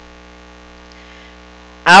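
Steady electrical mains hum with a stack of even overtones, a low constant buzz in the sound feed. A woman's voice starts speaking just before the end.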